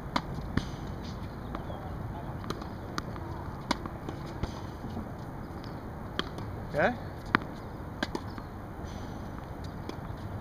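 Tennis ball impacts on an outdoor hard court: scattered short, sharp pops from racket strikes on serves and balls bouncing, at irregular intervals over a steady background noise.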